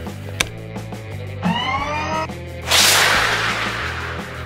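Cartoon sound effects over quiet background music for a toy's rocket boosters firing: a button click, then a rising power-up whine about a second and a half in. Past halfway comes a loud rushing blast of the boosters, which fades toward the end.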